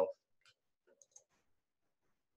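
The end of a man's spoken word, then near quiet with a few faint, short clicks about a second in.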